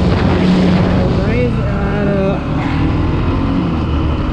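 Bajaj Pulsar NS200's single-cylinder engine running at high revs at top speed, under a loud rush of wind on the microphone. The level dips slightly a little past the halfway point.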